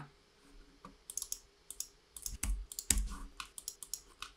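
Computer keyboard and mouse clicking in an irregular patter, starting about a second in, a few clicks with a soft low thud.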